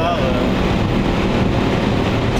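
Inside the cabin of a BMW 525i E34, its 2.5-litre 24-valve M50 straight-six, converted to run on E85, running steadily at speed along with road and tyre noise.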